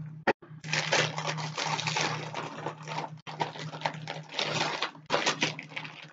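A shipping package being torn open and handled: crinkly rustling and tearing of the wrapping in a few stretches, with a short break about three seconds in and a last burst near the end.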